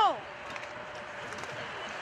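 A man's shout of "go" trailing off with a falling pitch, then a steady, even outdoor hiss.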